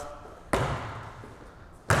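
Two bounces of a basketball on an indoor court floor, about a second and a half apart, each ringing on in the gym's echo.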